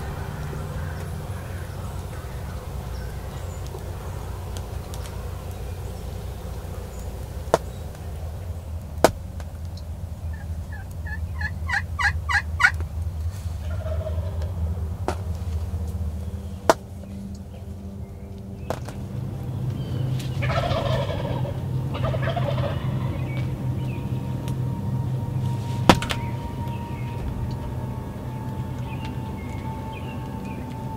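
Wild turkey toms gobbling: a rapid rattling gobble about ten seconds in and another about twenty seconds in, with a few sharp clicks between.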